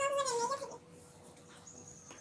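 A single short high-pitched vocal call, rising and falling in pitch and lasting under a second, at the start, then low room sound with a faint steady hum.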